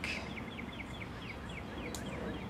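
A bird calling: a quick run of short, falling chirps, about six a second, that stops just before the end.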